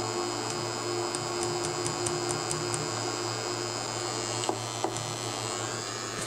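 A steady low electrical hum, with a quick run of faint high ticks in the first few seconds and two short clicks later on.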